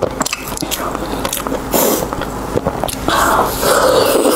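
Close-miked eating of sauce-coated pork: chewing and biting with many small wet clicks of the mouth, and a denser, louder stretch about three seconds in as the pork is bitten.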